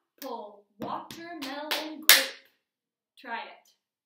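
A woman chants fruit words in rhythm while doing body percussion: pats on her chest and a sharp hand clap about two seconds in, the loudest sound.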